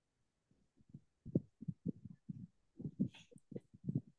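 Muffled, irregular low thumps of a hand knocking and rubbing against a device's microphone on a video call, about a dozen knocks starting about half a second in, with a brief scratchy rustle about three seconds in.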